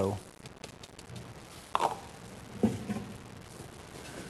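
Kitchen utensils being handled: a few faint clicks, then two short knocks about two and three seconds in.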